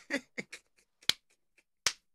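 A man's laughter trailing off in a few short breathy bursts, then two sharp hand claps under a second apart near the end.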